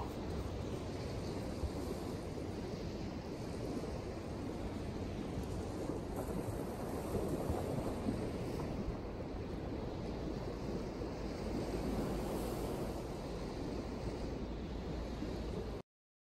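Small Lake Superior waves washing on a sandy shore, mixed with wind buffeting the microphone, a steady rushing noise that stops abruptly near the end.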